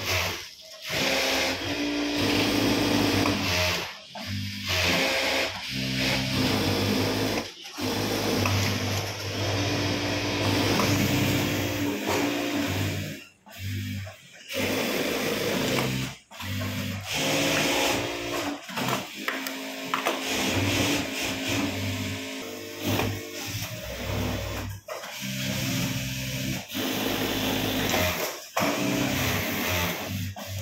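Singer industrial single-needle sewing machine running in runs of stitching through light frock fabric. It stops and restarts abruptly several times as the seam is guided along.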